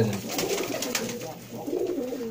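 Pigeons cooing.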